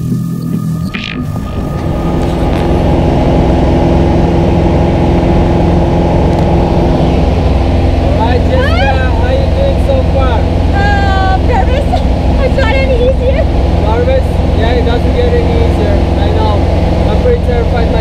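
Steady loud drone of a single-engine light aircraft's piston engine and propeller, heard inside the cabin while the plane climbs to jump altitude. Voices are heard over it from about halfway in.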